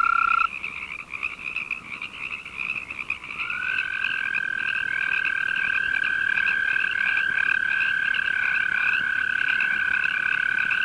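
Arroyo toad (Bufo microscaphus californicus) mating call, a long, high, steady trill. One trill stops about half a second in, and another begins about three and a half seconds in and runs on unbroken. A Pacific tree frog calls continuously at a higher pitch in the background.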